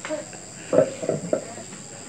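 Crickets chirring in a steady, continuous high trill. A few brief bursts of voice come through about a second in.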